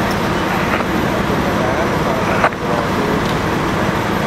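Steady outdoor roadway noise of idling vehicles and traffic, a constant rumble with hiss, with faint voices. One sharp click about two and a half seconds in.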